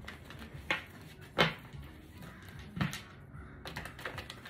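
A deck of tarot cards being shuffled by hand: soft rustling of the cards with a few sharp clacks as the cards are knocked together, the loudest about a third of the way in.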